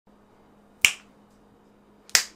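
A single sharp snap, a little under a second in, over a faint steady hum.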